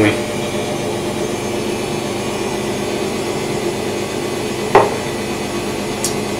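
Steady room hum, with one short knock about five seconds in as a drinking glass is set down on the kitchen countertop.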